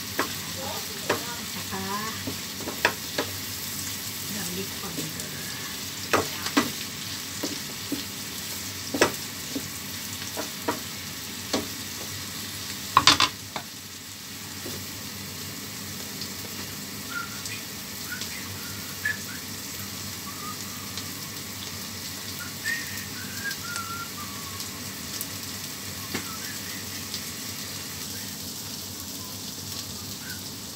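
Shrimp and green chilies sizzling in oil in a frying pan on a gas burner, with a wooden spatula knocking and scraping against the pan as they are stirred. About 13 seconds in, a glass lid clatters onto the pan. After that the sizzling goes on under the lid, with few knocks.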